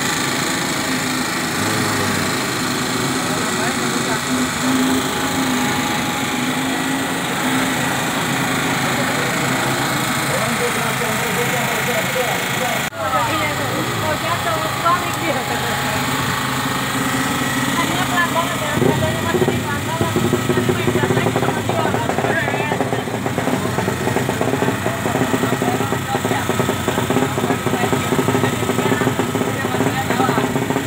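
Portable petrol generator running at a steady speed, with voices around it. About two-thirds of the way through, a deeper engine rumble joins in.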